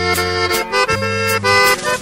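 Instrumental passage of a Mexican regional song: an accordion plays chords and melody over a bass line and regular percussion hits.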